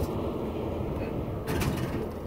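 Steady low rumble of interstate traffic going by close at hand, with a few light knocks about one and a half seconds in.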